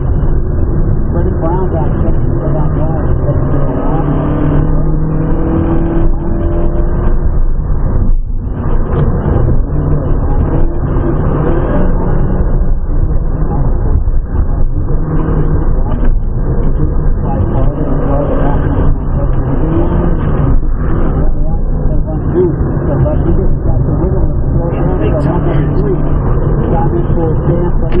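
Honda Fit's four-cylinder engine heard from inside the cabin, its pitch rising and falling as the car accelerates and slows through an autocross course, over steady tyre and road noise.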